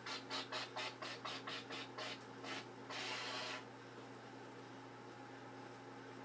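Air blown through a trumpet without buzzing the lips, tongued into a quick, even series of about a dozen short puffs of hiss and then one longer breath, while the valves are fingered: a simple tune played as air sounds.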